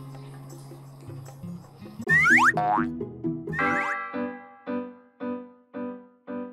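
Edited background music. Soft held tones give way, about two seconds in, to quick sliding boing-like cartoon sound effects, then a bouncy tune of short, evenly spaced notes.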